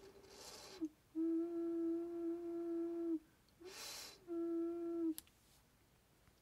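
A damp, unfired clay ocarina being blown while it is voiced. A breathy rush of air with a faint note starting in it gives way to a clear, steady low note held about two seconds. After a second airy puff the same note sounds again for about a second. The airiness is what the maker expects early in voicing, when the airway is still messy and the blade not yet sharp.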